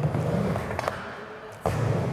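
Skateboard wheels rolling on a wooden ramp, a steady low rumble. About a second and a half in, a sudden knock, and the rolling comes back louder.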